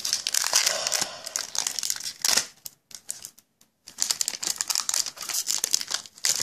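Foil Pokémon trading-card booster pack wrapper crinkling as it is handled and opened, in two stretches of crackling with a short quiet pause between them.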